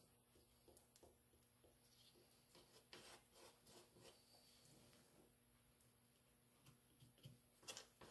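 Near silence, with faint scattered taps and scrapes of a wooden stick working two-part epoxy on a taped board; a few slightly louder taps come near the end.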